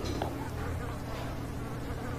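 A faint, steady low buzzing hum with no speech over it.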